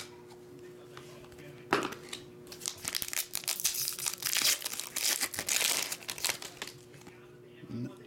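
Foil trading-card pack wrapper being ripped open and crinkled by hand. It starts with a sharp tear a little under two seconds in, crackles for about five seconds as the wrapper is pulled apart, and stops shortly before the end.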